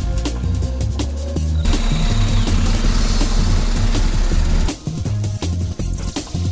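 Background electronic music with a fast beat and deep bass, swelling into a denser build-up section in the middle that drops back to the beat just before the end.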